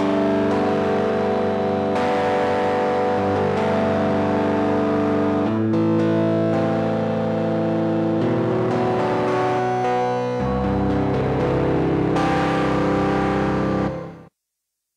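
Yamaha V50 FM synthesizer playing held chords that change several times, with a deep bass note joining about ten seconds in.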